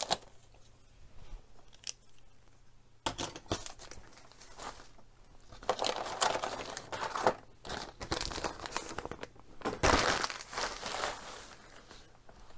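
Clear plastic bag around a plastic blister tray of parts being cut open and handled as the tray is pulled out. It is quiet for the first three seconds, then crinkles and rustles irregularly, loudest about ten seconds in.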